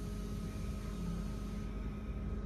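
Cabin running noise inside an ASEA-built X10 electric multiple unit in motion: a steady low rumble with a few constant hums over it.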